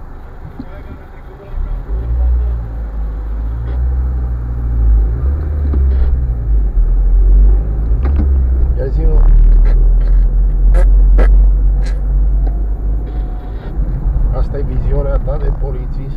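Car engine and road noise heard from inside the cabin as the car pulls away from a traffic light and drives on: a deep rumble that rises sharply about a second and a half in and stays loud.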